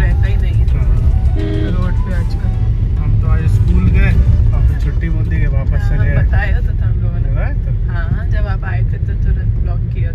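Steady low rumble of a car's engine and tyres heard from inside the moving car's cabin, with a song's singing voice playing over it.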